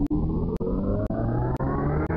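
Synthesized electronic sound effect: a dense buzz whose pitch rises steadily, with a sharp click about every half second, like a robot powering up.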